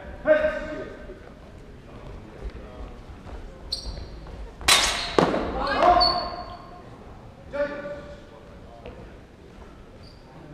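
Steel longswords clashing in a fencing exchange: sharp clangs about four and five seconds in, each leaving a brief high ring, with voices echoing in a large hall.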